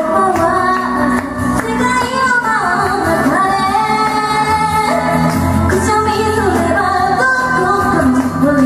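A woman singing a pop song into a microphone over a backing track.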